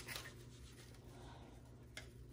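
Faint rustling as a cinnamon shaker jar is handled over potted seedlings, with a small click near the end, over a steady low hum.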